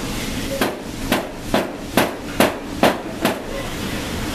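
A metal loaf pan full of raw loaf mixture knocked down repeatedly on a towel-covered steel worktable: seven dull knocks at an even pace of about two a second, over a steady background hiss.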